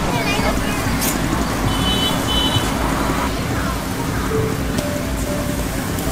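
Busy outdoor street-market ambience: a steady din of background voices and traffic, with music playing.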